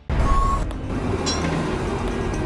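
City street traffic noise: a steady low rumble of passing vehicles that starts abruptly, with a short single beep just after it begins.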